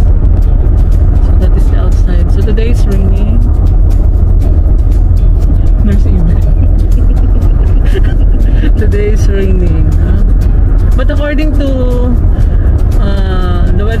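Steady low rumble of road noise inside a moving car, with music and a voice over it.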